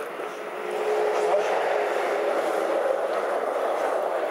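A road vehicle passing on the street: a steady rush that swells about a second in and eases near the end.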